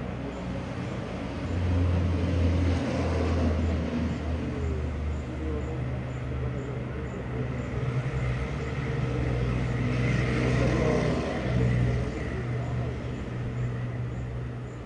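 A motor vehicle engine running steadily, with a low hum that swells twice, a couple of seconds in and again near the ten-second mark. Indistinct voices are underneath.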